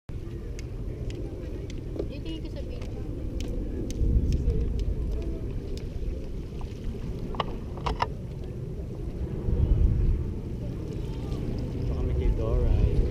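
Wind buffeting an action camera's microphone: a low rumble that swells in gusts about four seconds in and again near ten seconds, with a few sharp clicks.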